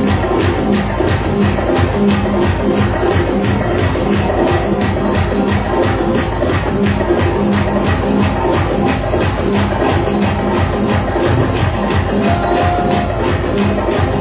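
Live worship music: an electronic keyboard playing with a steady, fast beat, with the congregation clapping along.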